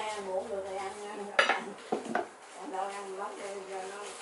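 Kitchen utensils and cookware clattering: a sharp metallic clink about a second and a half in, then a second knock about half a second later, with voices faintly in the background.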